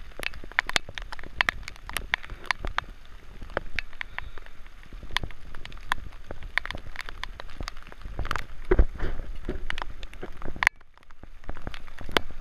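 Heavy rain, with drops striking the camera close to the microphone as sharp, irregular taps over a low wind rumble. The sound drops out briefly near the end.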